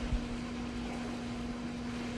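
Steady background hum, a single even low tone under a faint hiss, with no other events: the room noise of the recording.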